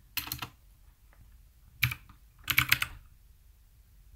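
Keys typed on a computer keyboard: a handful of sharp keystrokes in three short clusters, spelling out a terminal command.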